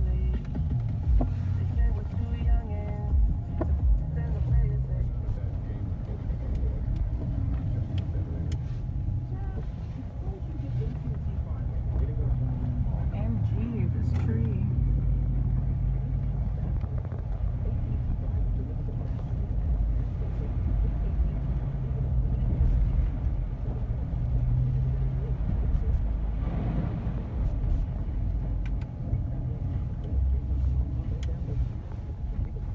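Car driving, heard from inside the cabin: a steady low rumble of engine and road noise.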